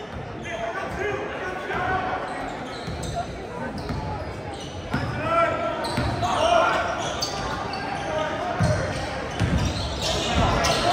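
A basketball dribbled on a hardwood gym floor, bouncing in short repeated thuds, over the voices and shouts of spectators in the gym.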